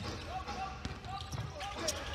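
A basketball bouncing on a hardwood court, a few separate impacts, with faint voices in a large, sparsely filled arena.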